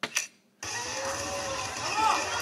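A soft-tip dart strikes an electronic dartboard with a sharp click. About half a second later, the dart machine's electronic award effects start abruptly and carry on loudly over hall chatter.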